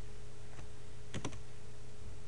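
A few keystrokes on a computer keyboard: one tap about half a second in and two quick taps just past a second, over a steady low hum and hiss.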